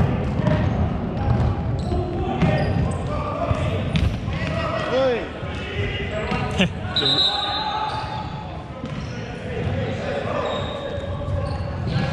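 Futsal ball being kicked and bouncing on a hardwood sports-hall floor, with indistinct players' calls and a few short squeaks, echoing in the large hall.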